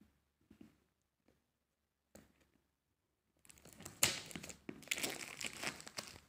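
Plastic wrapping on a smartphone box crinkling and tearing as it is pulled open. It starts about three and a half seconds in, after a few faint handling sounds.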